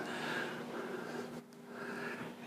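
Quiet pause with a man's faint breathing over a low steady hum, briefly dropping away just past the middle.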